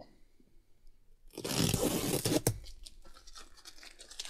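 Strip of red tape peeled off a leather car seat in one pull: a ripping sound lasting about a second, starting about a second and a half in and ending in a sharp snap as the tape comes free, with softer rustling after.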